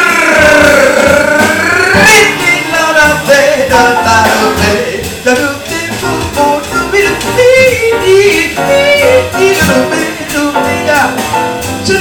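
Live jazz: a woman singing, with long bending notes and no clear words, over a small band with drums.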